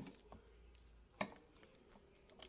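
One short, light click about a second in as a worn suspension stabilizer link is handled by hand, over faint workshop room tone.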